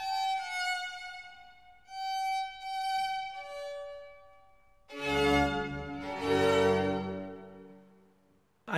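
Classical string music: a slow violin line of single held notes, then two fuller chords with a low bass about five and six seconds in, dying away near the end.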